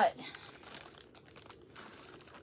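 Packaging crinkling and rustling faintly as a wristband is pulled out of it by hand.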